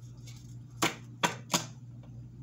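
Three sharp taps, about a third of a second apart, from a ringed hand on tarot cards spread over a table, with a fainter tick before them.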